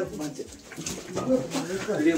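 Indistinct voices of people talking in a small room.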